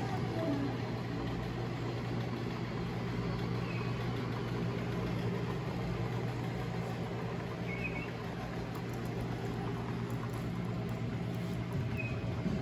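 A steady low mechanical hum under a faint hiss, with two faint brief high chirps about four and eight seconds in.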